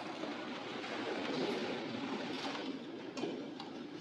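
A church congregation rising to its feet: a broad rustle and shuffle of clothing, feet and wooden pews, loudest about halfway through, with a few knocks near the end.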